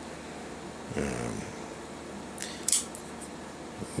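A Benchmade Mini Griptilian folding knife being picked up and opened: a short cluster of sharp clicks about two and a half seconds in.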